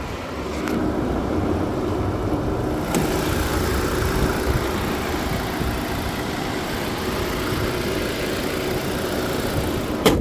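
2023 Volkswagen Tiguan SE's 2.0-litre turbocharged four-cylinder engine idling steadily, heard with the hood up. There is a thump at the very end.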